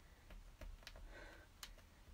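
Near silence: room tone with a few faint ticks as an inked stamp is pressed down by hand onto a paper book page.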